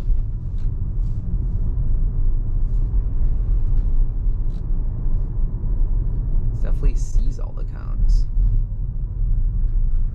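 Steady low road and tyre rumble in the cabin of a Tesla Model Y electric car moving slowly. A short stretch of indistinct voice comes in about seven seconds in.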